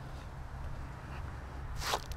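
A faint, steady low hum, with one brief scuff of a flip-flop sandal on the concrete driveway just before the end.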